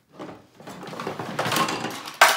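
Toy pieces clattering and rustling as a toddler handles them, a noisy jumble that builds and grows louder through the second half.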